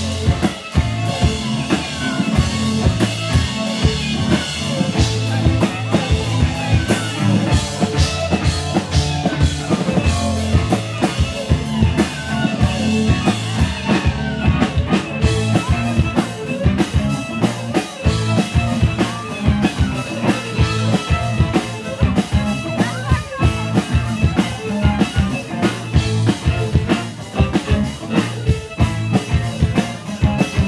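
Live instrumental folk-rock band, with fiddle, upright double bass, drum kit and guitar, playing a Balkan-style tune with drum strokes throughout, picked up by camera microphones in the room.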